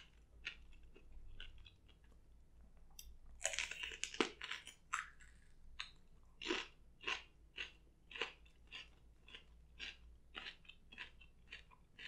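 Close-miked crunchy chewing of small pickled peppers: a louder run of crisp bites about three and a half seconds in, then steady crunching chews about two a second.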